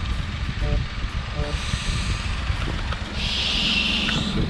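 Uneven low rumble on the microphone of a handheld camera being carried along a quay, with a burst of hiss near the end.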